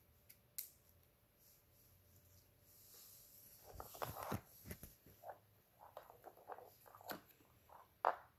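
Plastic MC4 solar Y-branch connectors and their cables being handled on a wooden table: a sharp click about half a second in, then quiet, irregular small clicks and rustling from about three and a half seconds in.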